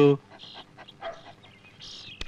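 Faint, brief noises from caged dogs as a biscuit is held out to a German shepherd, after a man's spoken line ends at the very start.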